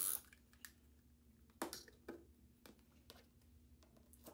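The end of a tape runner stroke laying adhesive on a cardstock panel at the very start, then a few light clicks and taps of paper being handled.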